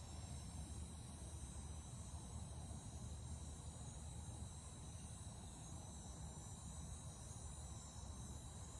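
Faint outdoor ambience of insects chirring steadily, a thin high tone over a low steady rumble.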